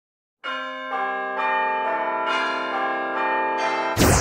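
A run of bell-like chimes from an intro jingle: about eight struck notes starting about half a second in, one roughly every half second, each ringing on and overlapping the ones before.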